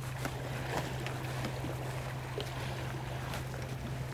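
Steady low drone of a distant engine, with scattered faint ticks of small waves lapping on concrete breakwater blocks.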